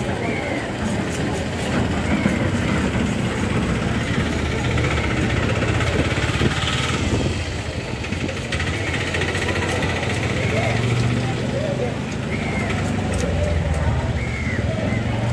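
A knife scraping scales off a large black trevally on a wooden block, among the steady noise of a busy market: voices in the background and an engine running.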